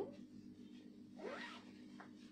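A zipper being pulled, faint, about a second in, over a steady low hum.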